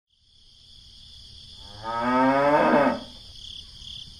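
A cow mooing once, a long call of about a second, its pitch rising slightly. Steady high chirring of crickets underneath, fading in at the start.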